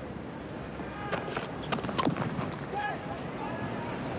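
Cricket-ground crowd ambience on a television broadcast, with scattered shouts and a single sharp crack about two seconds in as bat strikes ball, followed by voices as the batsmen run.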